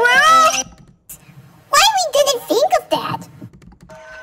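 Cartoon character voices: a high child's voice speaking briefly, then after a short pause a longer stretch of high, gliding vocal sounds.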